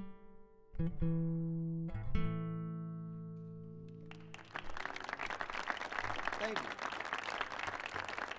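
Acoustic guitar playing the closing chords of a song: two chords struck in the first couple of seconds, the last one ringing out and fading. About four seconds in, an audience starts applauding and keeps on.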